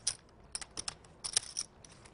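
Poker chips clicking together as they are handled at the table: a run of short, irregular clacks, with one sharper clack about two-thirds of the way through.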